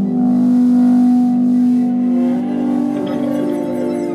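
Live psychedelic rock band playing a slow, droning passage: guitar and keyboard notes held long, with a hissing wash over the first couple of seconds.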